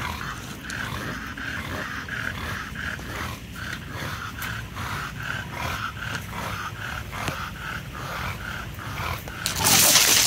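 A dog panting hard in quick, even breaths, about three a second. A louder, sudden noise comes in just before the end.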